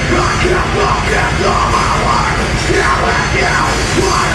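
Metal band playing live, loud and dense without a break, with yelled vocals over the instruments.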